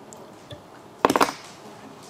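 A faint click, then about a second in a loud, quick clatter of several clicks from the fly-tying bench's tools being handled.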